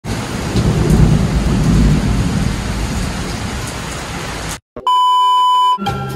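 Heavy rain pouring down on a street, with a deep rumble underneath. It cuts off sharply about four and a half seconds in, followed by a steady electronic beep lasting about a second, and then music starts.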